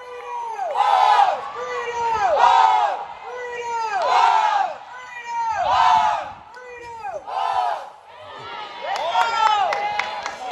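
A group of high voices chanting a cheer in unison, the same sung phrase repeated in a steady rhythm about every one and a half seconds.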